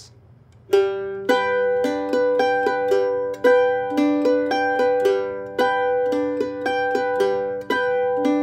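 F-style mandolin playing guitar-style backup: a bass note and a strummed chord on the first two beats, then single notes picked one by one across the chord shape on beats three and four, in a steady repeating pattern. The playing starts after a short silence, under a second in.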